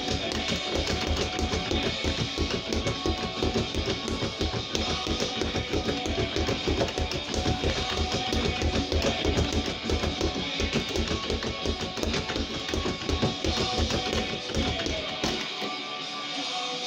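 Leather speed bag being punched in a fast, continuous drumming rhythm that stops about a second before the end, over loud rock music with electric guitar.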